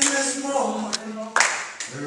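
Voices singing held notes with hand clapping; several sharp claps come roughly every half second, the loudest about a second and a half in.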